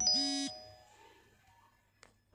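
A short electronic beep, about half a second long, that cuts off sharply and leaves a faint high ringing, followed by quiet room tone.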